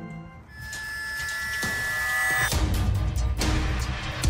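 Background music: a held chord swells in loudness, then a beat with heavy bass and drums comes in about two and a half seconds in.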